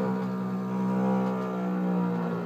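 Double bass played with the bow, holding one long steady note, with piano playing alongside.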